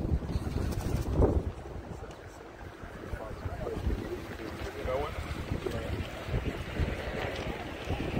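Wind buffeting the microphone as a low, uneven rumble, with faint voices in the background.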